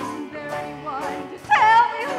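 Operatic-style stage singing, with voices in wide vibrato over a sustained accompaniment. About a second and a half in, a voice swoops sharply down from a high note, the loudest moment.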